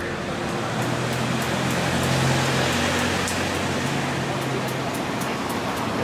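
Street traffic noise: a steady rushing hiss with a vehicle engine's low hum that swells about two seconds in and then eases.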